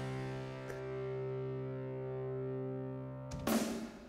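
Digital piano style accompaniment in a rock style: a held chord rings steadily for about three seconds, then a drum hit with a cymbal wash comes in near the end.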